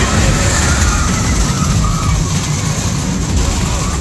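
Steel roller coaster train rumbling along its track as it runs past, a loud steady roar, with faint riders' and bystanders' voices over it.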